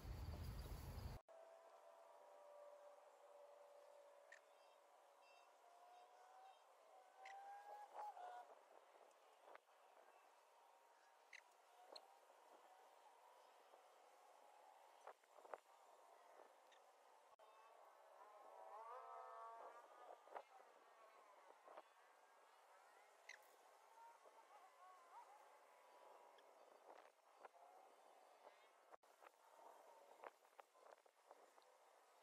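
Near silence after a louder sound cuts off abruptly about a second in, leaving faint outdoor ambience with scattered faint bird chirps.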